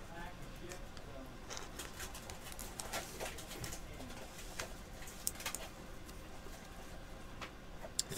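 Quiet room with faint, scattered clicks and rustles as trading cards and their plastic holders are handled and pulled from a box.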